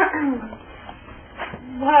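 A wordless human vocal cry that slides down in pitch in the first half second. Near the end comes a drawn-out exclaimed "whoa".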